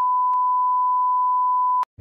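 A steady, pure test-tone bleep, the kind that plays over broadcast colour bars to signal technical difficulties, held on one pitch and cutting off suddenly near the end.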